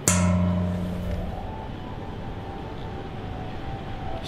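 An embossed metal plate struck by hand: a sharp hit, then a ringing tone that slowly dies away.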